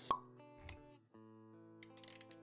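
Intro music for an animated logo: held notes with a sharp pop just after the start, the loudest moment, and a soft low thump a little later. The notes drop out briefly about a second in, then resume with a few clicks near the end.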